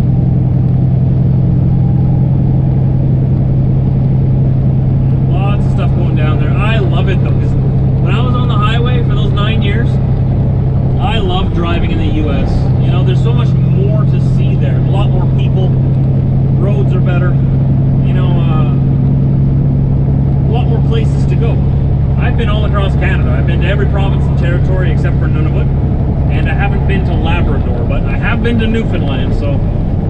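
Steady low drone of a semi truck's diesel engine and road noise heard inside the cab at highway cruising speed. The drone dips briefly about eleven seconds in and changes again near the end.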